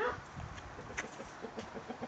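A few faint, sharp clicks and knocks of a door lock and latch being worked, over low handling noise.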